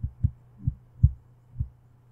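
Five dull, low thumps at uneven intervals over a faint steady low hum in the recording.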